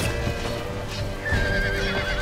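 A horse whinnying, one wavering high call starting a little past halfway, over background music.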